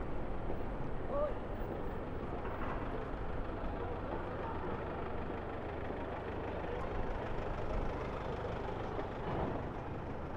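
Low-speed city traffic: a Rolls-Royce Cullinan and a Mercedes Vito van moving off along the street, a steady engine and tyre rumble, with people's voices in the background.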